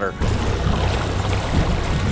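Steady rumbling noise of a fishing boat under way at trolling speed, about 3 mph.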